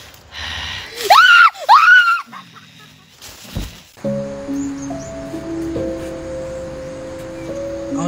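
Two loud screams, each rising and falling in pitch, about a second in, then from about four seconds in steady background music of long held notes.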